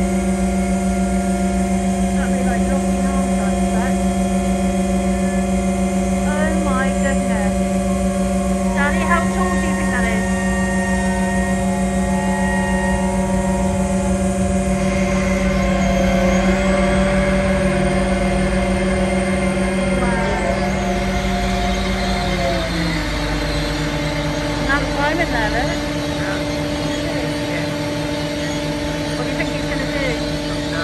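A large engine running at a steady speed with a deep, even hum. Its pitch drops slightly about 22 seconds in as it slows.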